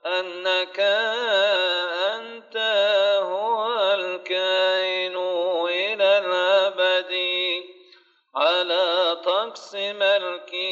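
Male voices singing Coptic liturgical chant in long melismatic phrases, the pitch winding up and down on held vowels, with a short break about eight seconds in.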